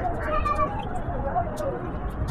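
Baby making short vocal sounds that rise and fall in pitch.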